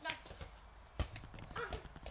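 Footsteps in sandals slapping and scuffing on stone patio paving, with a sharper knock about a second in.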